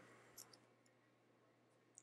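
Near silence: room tone, with two faint clicks about half a second in.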